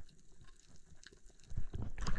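Faint underwater hiss with a few small clicks from a camera held below the surface; about a second and a half in, water sloshing and splashing as the camera breaks the surface.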